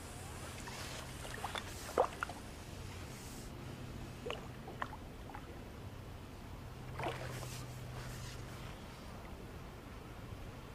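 A hooked fish being played on a fishing pole: a few faint short splashes and clicks, the clearest about two seconds in, then a few more around four to five seconds and at seven seconds, over a low steady hum.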